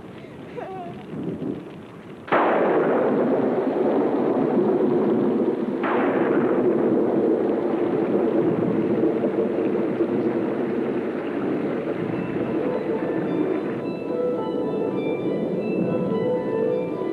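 Film soundtrack: a sudden loud blast about two seconds in and a second, sharper one about four seconds later, each trailing off into a sustained rumble under dramatic music that carries on to the end.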